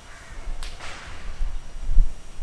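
A single sharp crack about half a second in, followed at once by a short rasping swish, over a low, uneven rumble.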